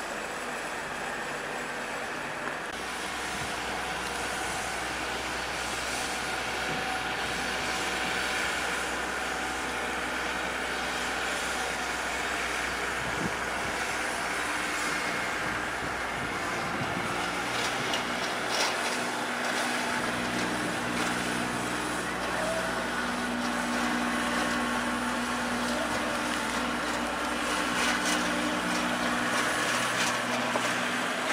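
Compact tractor's engine running steadily as it tows a lawn roller over the turf; the engine note shifts to a different pitch about two-thirds of the way through.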